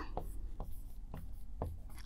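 Marker pen writing on a board: a few faint, short scratching strokes as a word is written.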